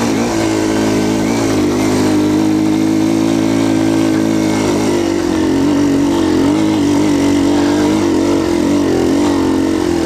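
Yamaha TTR230's single-cylinder four-stroke engine pulling under load up a steep dirt hill. Its pitch wavers with the throttle and dips briefly about two seconds in.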